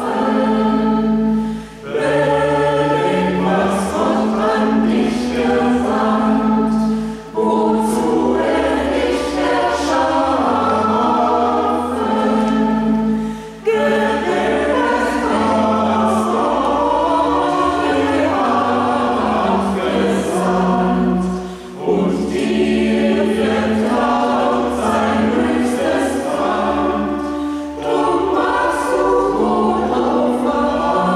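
A church choir singing a sustained chorale-style piece in several voices, its phrases separated by short breaths about every six seconds.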